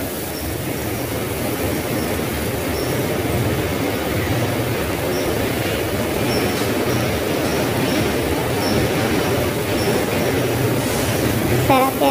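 Chopped onions sizzling as they fry in hot oil in a steel pan while being stirred with a spatula. The sizzle is steady and fairly loud, with a few faint short high squeaks through it.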